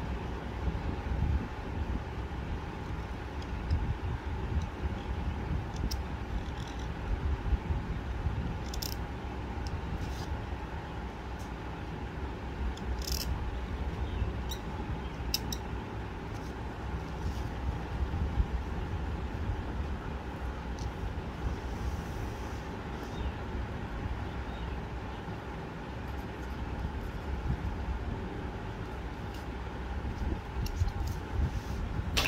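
A steady low background rumble, with a few faint scratches of a bamboo reed pen (qalam) drawn across paper during calligraphy writing.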